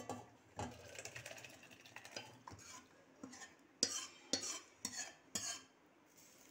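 Steel cooking vessels and a metal utensil clinking and scraping, with four sharp clinks about half a second apart in the second half.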